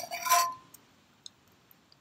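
Metal spoon clinking against a stainless steel Stanley camp cup: a quick run of clinks over the first half second, the last one ringing briefly. A few faint ticks follow.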